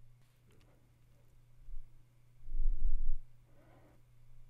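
A pause with a steady low electrical hum throughout, and a brief low rumble about two and a half seconds in.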